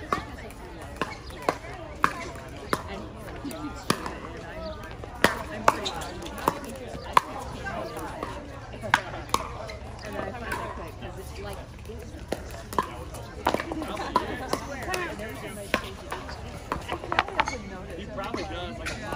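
Pickleball paddles striking balls: sharp, irregular pops, a few to several seconds apart and some close together, coming from rallies on several courts at once. Voices murmur underneath.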